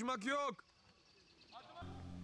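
A man's voice calling out in a drawn-out call that ends about half a second in, followed by quiet.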